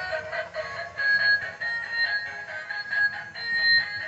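Musical bump 'n' go toy train playing its electronic tune, a melody of short beeping notes, over a low rumble from its motor and wheels as it runs along the floor.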